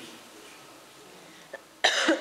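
Quiet room tone, then near the end a sudden loud cough from a woman coughing into her hand.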